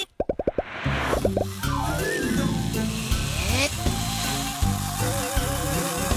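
A quick run of short cartoon popping sound effects marks a scene-change wipe. About a second in, light children's background music takes over, with a steady bouncing bass line and a simple tune.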